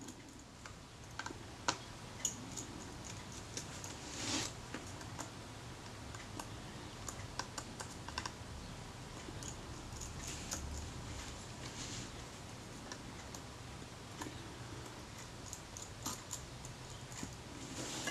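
Faint, scattered small clicks and scrapes of a small screwdriver working tiny screws out of the metal focus mount on the front of a Kodak Retina Reflex camera, with one slightly longer scrape about four seconds in.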